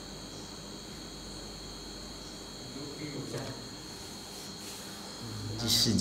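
A pause in speech: faint room tone with a steady high-pitched trill running throughout, and a man begins speaking just before the end.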